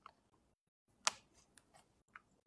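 A few faint, sharp clicks: a small one at the start, a louder one about a second in, then a couple of weaker ones.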